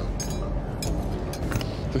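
A few light clinks of metal forks against a ceramic plate as a dish is tasted, over a low steady rumble.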